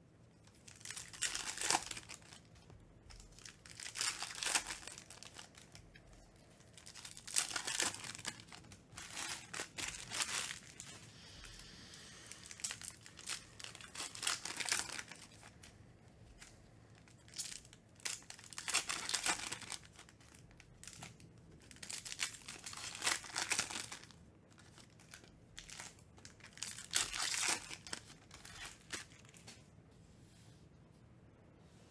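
Foil trading-card pack wrappers being torn open and crinkled by hand, in loud rustling bursts every three to four seconds, with quieter handling of cards in between.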